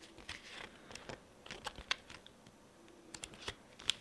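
Light, scattered clicks and taps of hands handling a cardboard game box and its paper booklet, lifting it out and opening the pages, with a few sharper taps about two seconds in and near the end.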